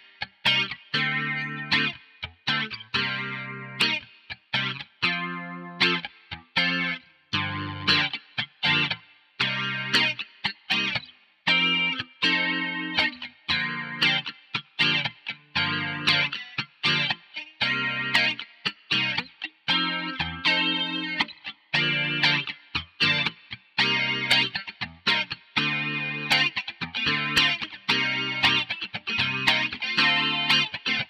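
Electric guitar playing a pop chord part in short, rhythmic stabs of minor-seventh chords, with muted strums clicking between them.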